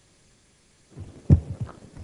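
A microphone opening about a second in, then one sharp, low thump and a couple of lighter knocks as it is handled.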